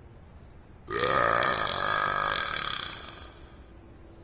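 A young girl's long burp, starting about a second in, rising in pitch at the start and then held for about two seconds.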